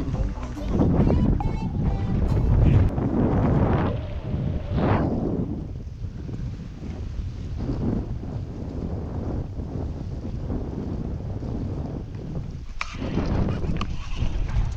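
Wind buffeting the microphone: a rough, low rumbling that is loudest in the first few seconds, then settles to a steadier, weaker level, with a sudden break near the end.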